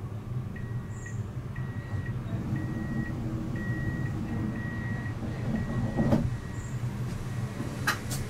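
Steady low rumble of a Siemens Avenio tram, with a high electronic beep repeating about once a second. About six seconds in there is a single loud thump.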